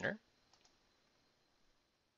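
Two faint, quick clicks, about a tenth of a second apart, from a computer mouse button pressing the ENTER key of an on-screen TI-84 Plus calculator emulator; otherwise near silence. The tail of a spoken word opens the clip.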